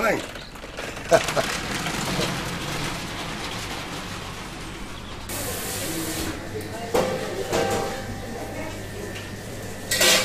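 Metal shopping trolley rattling as it is pushed over paving, followed about five seconds in by a brief hiss, and then indistinct voices.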